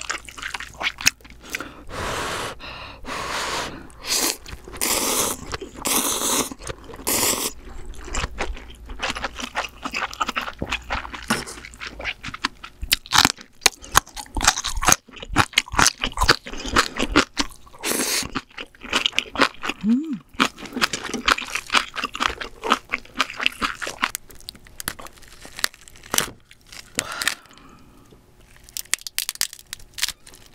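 Close-miked eating of ramen noodles: several long slurps in the first several seconds, then steady chewing with many quick, crisp crunching clicks.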